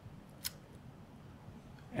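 A short pause in a talk: faint room hum with one short, sharp click about half a second in.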